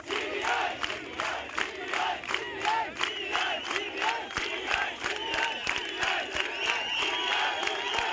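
A large crowd chanting slogans in unison, with clapping in a steady beat of about three claps a second.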